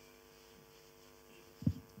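Faint steady electrical hum from the sound system, with a brief short sound from the microphone about a second and a half in.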